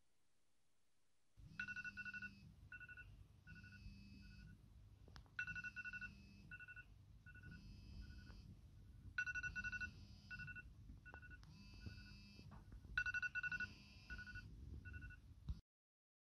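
iPhone alarm ringing faintly, a repeating pattern of electronic beeps in phrases that recur about every four seconds. It starts about a second and a half in and stops shortly before the end.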